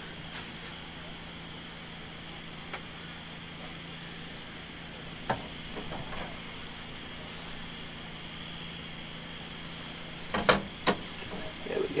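Floured fish fillets frying in olive oil in a hot pan, a steady sizzle, with a few light knocks of handling and two louder knocks about ten and a half seconds in.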